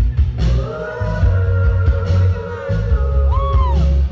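A live rock band playing, heard from the audience: a heavy, steady low-end beat of kick drum and bass, with a long held note sustained over it.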